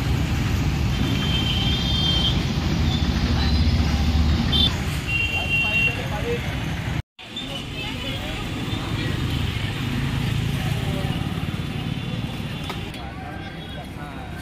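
Busy street ambience: steady motor-traffic noise with voices of people around. The sound drops out for an instant about halfway through.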